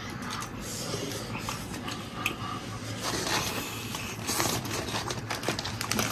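A man chewing and gnawing braised pig's trotter, with irregular small clicks and smacks of the mouth.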